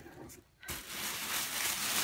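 Thin plastic wrapping rustling and crinkling as it is pulled back by hand, setting in about two-thirds of a second in and going on steadily.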